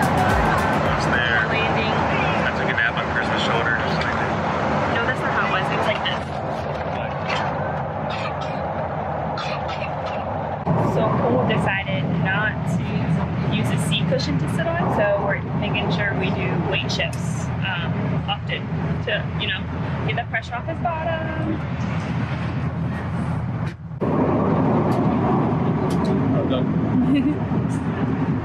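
Steady drone of an airliner cabin in flight, from the engines and airflow, heard from a passenger seat. It gets louder and deeper about eleven seconds in, drops briefly just before the 24-second mark, then comes back louder.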